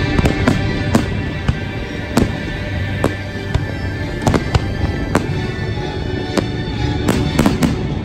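Aerial fireworks shells bursting in a dozen or so irregular bangs, with a quick cluster of several near the end, over steady music.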